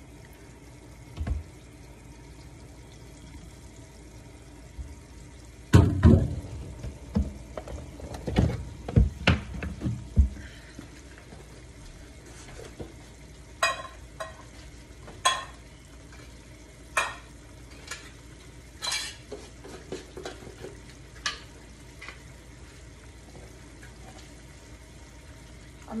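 Kitchen utensil sounds over a faint steady hiss: a cluster of dull knocks and scraping about six seconds in, then a scatter of sharp single clicks and clinks, typical of a spatula and pan being handled while cooking.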